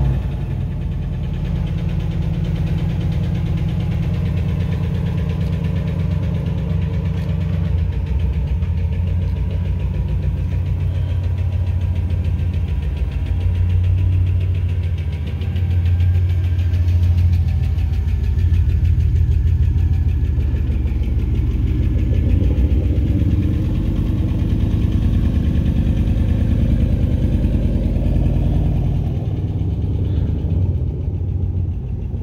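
Chevrolet Impala SS's 5.3-litre LS4 V8 running at low revs with a steady low rumble and even pulse as the car pulls slowly away. It swells a little about halfway through.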